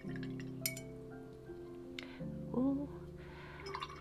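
Soft instrumental background music with held notes. A few light clinks come through it: one about half a second in, one about two seconds in, and some near the end.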